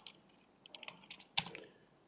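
Computer keyboard keystrokes and clicks: a single tap at the start, a quick run of taps over the middle second, and one sharper click near the end.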